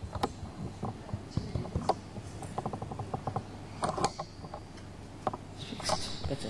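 Microphone handling noise as the microphone is worked loose from its stand and taken in hand: a string of clicks, knocks and rubbing, with a quick run of small ticks in the middle and a heavier cluster of knocks about four seconds in.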